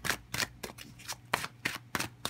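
A deck of tarot cards being shuffled by hand: a quick, irregular run of short card snaps and swishes, several a second.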